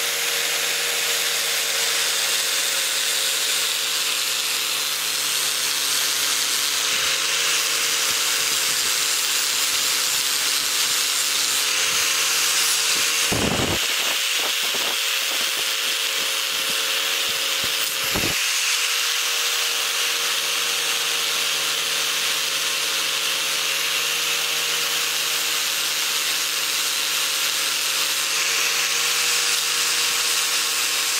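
Angle grinder running with a buffing wheel against an aluminium knife blade: a steady motor whine under the hiss of the wheel polishing the metal, with two brief knocks in the middle.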